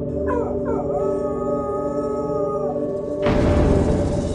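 A dog howling: two short falling notes about a third of a second in, then one long held howl lasting about two seconds, over a steady low musical drone. A loud burst of noise cuts in about three seconds in.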